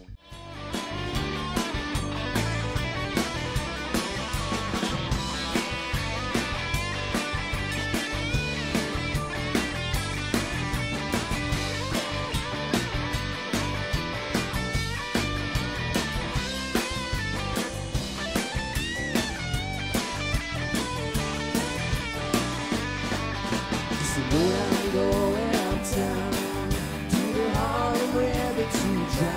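Live rock band playing: two electric guitars over drums with a steady beat, getting a little louder near the end.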